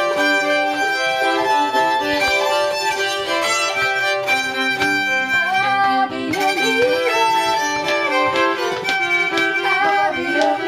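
Fiddles bowed together, playing long sustained notes. About halfway through, the pitch slides between notes.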